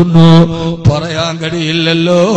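A man's voice chanting in long, held notes at a steady pitch, in a slow melodic delivery.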